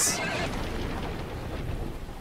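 A horse in an anime soundtrack crying out after being shot with a crossbow: a brief whinny at the start that trails off into rough noise, slowly fading.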